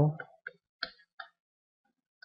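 A few faint, short clicks of a stylus tip tapping a drawing tablet as digits are handwritten, three within about a second, then quiet.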